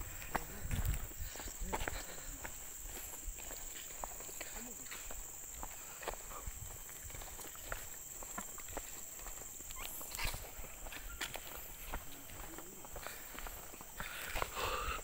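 Footsteps on a concrete path: irregular scuffs and taps from people walking, over a steady high-pitched whine in the background.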